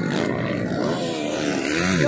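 Motocross dirt bike engines revving on the track, their pitch rising and falling with the throttle.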